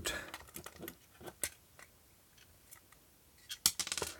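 Faint clicks and taps of hard plastic being handled as a plug-in nightlight's two-part plastic case is pulled apart, with a cluster of sharper clicks about three and a half seconds in.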